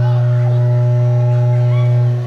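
Loud, steady electrical hum through a PA system, a single flat low tone with faint higher overtones, fading out at the end.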